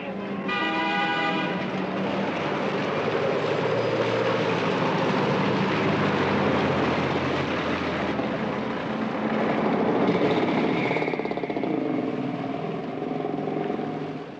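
A horn sounds for about a second, then the loud, steady noise of a passing motor vehicle runs on and dies away near the end.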